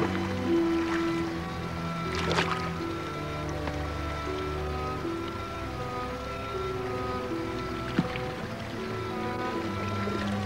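Slow background music of long held notes over a sustained low bass, with a couple of brief clicks.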